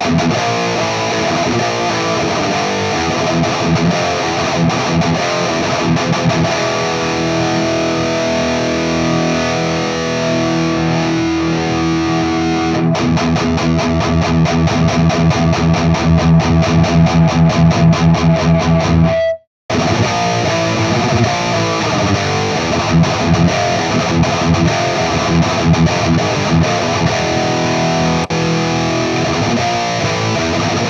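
High-gain distorted electric guitar played through a Peavey 5150 tube amp head with an overdrive pedal boosting its input, close-miked on a Vintage 30 speaker. Heavy metal riffing with a run of fast palm-muted chugging in the middle. The sound cuts out for a moment about two-thirds through, then the riffing resumes.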